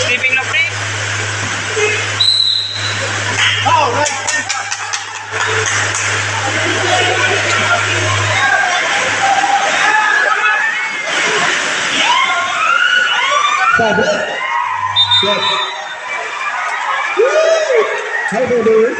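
Crowd of spectators chattering and shouting around a basketball game, with a steady low hum that stops about eight seconds in.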